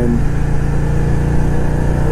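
2008 Victory Vision Tour's V-twin engine running steadily while the motorcycle cruises at road speed, heard from the rider's seat.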